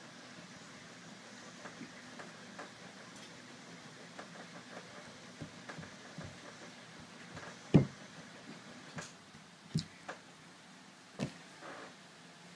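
Scattered taps and knocks of hands against a tabletop while signing. The loudest knock comes about two-thirds of the way through, and a few more follow near the end.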